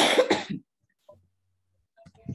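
A person's short, harsh cough in a few quick bursts, lasting about half a second, at the very start.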